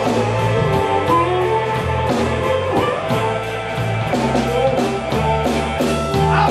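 Live electric blues band playing: electric guitars over a bass line and a steady drum beat.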